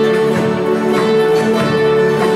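Country string band playing an instrumental passage: acoustic guitars strummed in a steady rhythm under long held melody notes.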